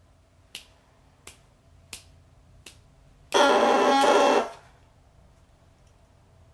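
Four light clicks about 0.7 s apart, then a bassoon reed blown on its own sounds one buzzy crow of just over a second. The crow starts sharply as the tongue is released from the reed.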